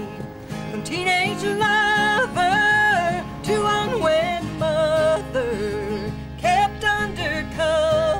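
A woman singing a slow country song, with vibrato and long held notes, over instrumental accompaniment.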